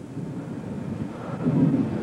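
Wind buffeting an outdoor camcorder microphone with a low rumble, which grows louder about one and a half seconds in.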